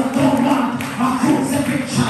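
A woman's voice singing through a microphone and PA system, holding and bending long notes.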